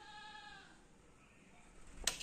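A faint, single bleat-like animal call at the start, lasting under a second and falling slightly in pitch.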